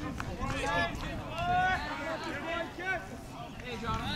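People talking: speech only, with no other distinct sound.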